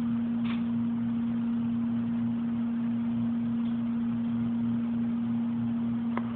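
A steady low hum with a light hiss behind it, broken only by a faint brief sound about half a second in.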